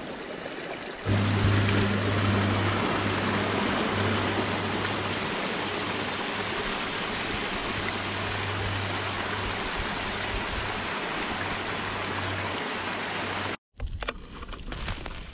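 A small cascade in a mountain stream splashing over mossy rocks: a steady rush of water that gets louder about a second in, with a low steady hum beneath it. The sound cuts off abruptly just before the end.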